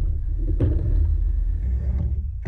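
Skateboard wheels rolling on a wooden mini ramp, a steady low rumble, with one sharp knock of the board about half a second in.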